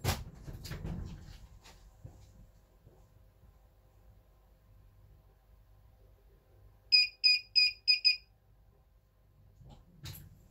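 Hikvision IDS-7216 AcuSense DVR's built-in buzzer sounding its audible warning: five short, high beeps about a third of a second apart, about seven seconds in. The beeps are the face-detection alarm firing, which shows that a face was picked up despite dark sunglasses. A few soft knocks and a low rumble come in the first two seconds.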